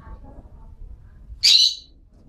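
A melodious laughingthrush (Chinese hwamei) gives a single short, loud, high call about one and a half seconds in.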